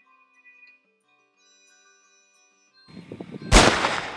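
A single loud gunshot about three and a half seconds in, with a decaying tail, after nearly three seconds of near silence with only faint steady tones.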